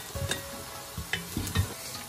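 Chopped onions sizzling and frying in oil in a pot while a wooden spoon stirs them, with a few short scrapes and knocks of the spoon against the pan through the middle.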